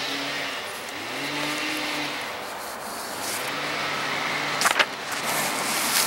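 A motor engine running, with a steady hiss and a low hum whose pitch rises and levels off about a second in and again around three and a half seconds in. A sharp click comes near the end.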